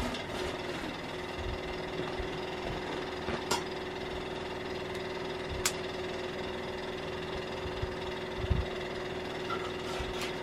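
Cast iron skillet of biscuits cooking on a wood stove: a steady sizzle with a low hum under it. There are a few sharp clicks about three and a half and five and a half seconds in, and a soft low knock near the end.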